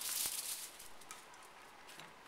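A burst of clattering and scrabbling in the first half second as several small dogs rush across a tile floor to their food bowls, followed by a few faint clicks.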